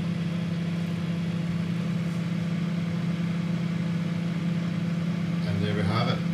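Microwave oven running: a steady, unchanging low hum.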